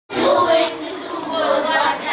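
A class of young schoolchildren reciting their multiplication tables aloud together in a sing-song unison chant, starting abruptly.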